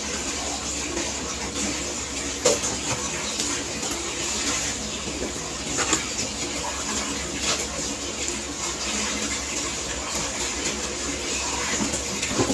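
A steady hiss of background noise with a low hum under it, broken by a few faint clicks.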